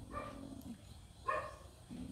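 A dog barking faintly twice, in the distance.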